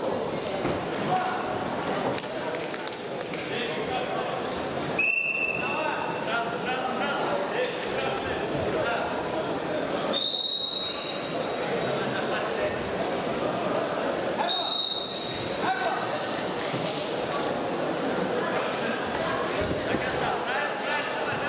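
Wrestling-hall crowd noise of many voices talking and calling out, cut by three short referee's whistle blasts, about five, ten and fifteen seconds in. The first blast is lower-pitched than the other two.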